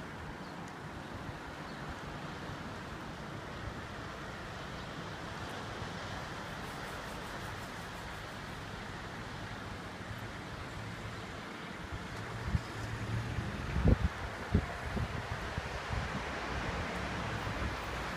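A steady outdoor wash of distant surf and road traffic. In the last third, wind gusts buffet the microphone in low rumbles, the hardest one a little past the middle of that stretch.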